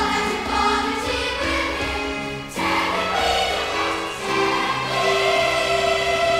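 A large choir of children and adults singing held chords. A new phrase begins about two and a half seconds in, and it settles on a long held note near the end.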